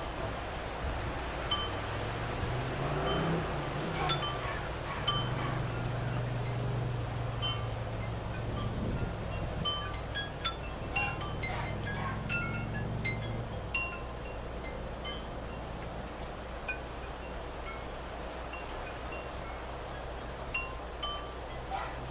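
Wind chimes tinkling irregularly, single light rings at several pitches scattered all through, with a low drone underneath for about the first two-thirds.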